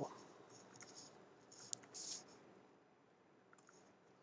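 Faint computer keyboard typing: a handful of soft key clicks, with a sharper keystroke about one and a half seconds in, then near silence.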